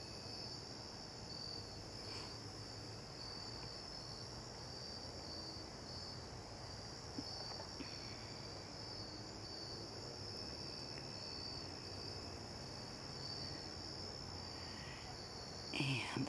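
Faint, steady, high-pitched chorus of crickets trilling.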